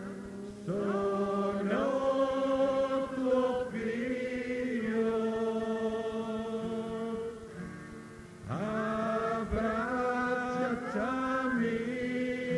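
Voices singing a slow liturgical chant in long held notes, sliding up into each note, in two phrases: the second begins about eight and a half seconds in after a brief lull.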